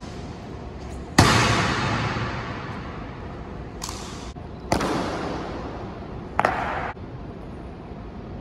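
Sharp strikes from an honor guard's drill on the stone floor of a marble hall, four in all with the loudest about a second in, each ringing on in a long echo.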